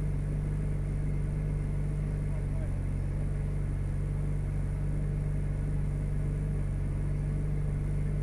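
Ferrari 458 Speciale's V8 idling steadily while the car stands still, heard from inside the cabin as a low, even drone.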